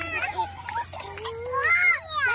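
Young children's voices chattering and calling out in play, with a louder, high-pitched call near the end.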